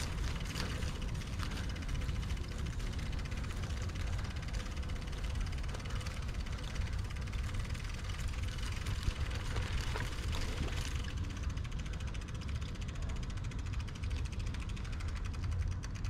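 Wind buffeting the microphone of a camera on a moving bicycle: a steady low rumble with an even hiss over it.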